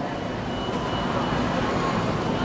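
Steady background noise of an outdoor stage setting: an even hiss and hum with no distinct event.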